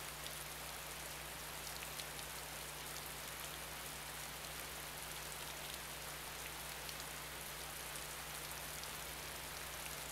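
Steady, faint hiss with a low electrical hum and a few scattered faint ticks: the background noise of the lecture recording while the video shows a black screen.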